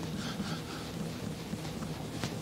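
Microfiber cloth rubbing T-cut polishing compound back and forth over a scratch on a caravan window: a steady, soft rubbing noise.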